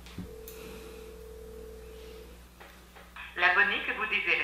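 Outgoing phone call ringing out: one steady ringback tone lasting about two seconds, and the call goes unanswered. A man's voice comes in near the end.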